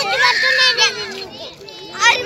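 Children's high-pitched voices shouting and calling out, loudest in the first second, then quieter.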